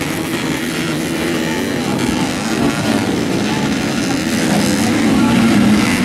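Dirt bike engines revving on a muddy motocross track, the pitch wavering up and down without a break and growing a little louder near the end.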